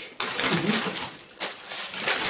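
A paper takeaway bag rustling and crinkling as a hand rummages inside it and pulls food out.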